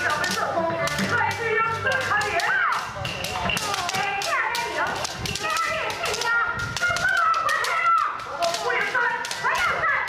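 Bamboo shinai clacking sharply and many times over as young kendo practitioners strike at each other, over many overlapping high-pitched kiai shouts.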